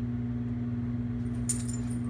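A steady low electrical hum throughout, with a brief metallic jingle of the dog's collar and leash hardware about one and a half seconds in as the dog moves.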